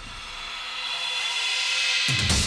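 Trailer sound-effect riser: a noisy swell with faint high, steady tones that grows steadily louder and breaks off right at the end.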